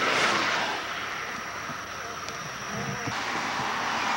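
Highway traffic going by: a vehicle passes with a rush of tyre and wind noise at the start that fades away, and another builds up near the end.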